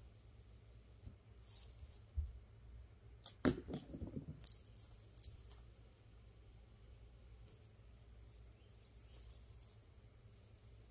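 A dull thump about two seconds in, then a sharp knock followed by a quick run of light clicks over the next couple of seconds, against a faint quiet background.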